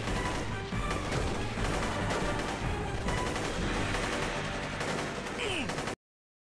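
Battle gunfire: rifles and machine guns firing rapidly in a dense, continuous volley, which cuts off abruptly just before the end.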